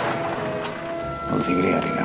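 Rain falling, under a film score of steady held notes, with a brief louder sound about a second and a half in.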